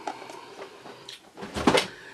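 A single short clunk, about one and a half seconds in, of an item being handled and set down on a desk; otherwise quiet room tone.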